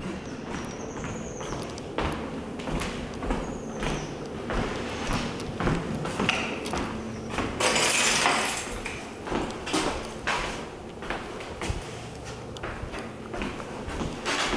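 Irregular footsteps and handling knocks as someone walks a handheld camera through empty rooms, with a brief rustle about eight seconds in.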